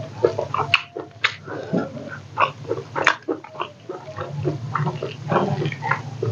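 Close-miked eating sounds: wet chewing and lip smacks in quick, irregular clicks as rice and pork are eaten by hand, over a steady low hum.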